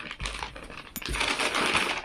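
Rustling and crinkling of cloth and a plastic packaging bag as a packed suit is unfolded by hand, with a sharp click about a second in.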